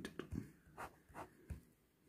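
Ballpoint pen writing on paper: a handful of short, faint scratching strokes as a unit is written and the answer underlined twice.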